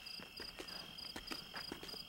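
Crickets chirping faintly: a steady high trill with short chirps repeating about three times a second.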